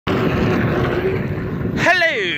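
Self-balancing electric one-wheel board rolling fast over concrete: a steady rush of tyre and wind noise with a faint thin whine. A man's voice breaks in near the end.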